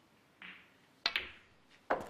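Snooker cue tip striking the cue ball about a second in, followed a split second later by the sharp click of the cue ball hitting a red, in a shot that pots the red. Another sharp click comes near the end.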